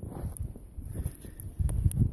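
Rustling and a few light clicks and knocks of handling around a camp kettle on a twig stove, over a low irregular rumble of wind on the microphone that grows louder near the end.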